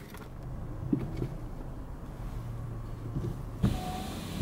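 Low steady hum of a car idling, heard from inside the cabin, with a few faint knocks and a thump near the end.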